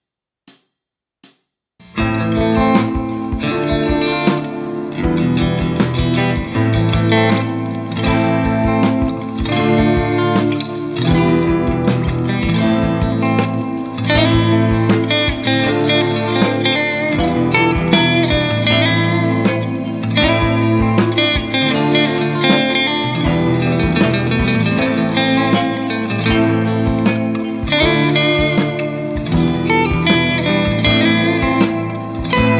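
Three short ticks, then about two seconds in a rough mix of clean electric guitar starts: a Fender Stratocaster through the clean green channel of an EVH 5150 III 50-watt 6L6 valve amp into a 2x12 cab with Vintage 30 speakers, with several guitar parts layered over each other.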